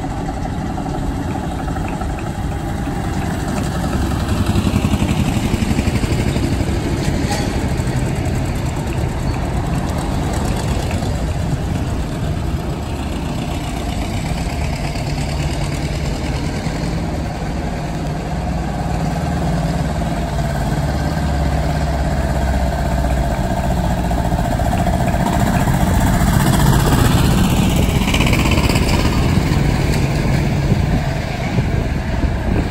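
Tractor engines running as tractors drive past one after another on cobblestones, the sound swelling as each one comes close.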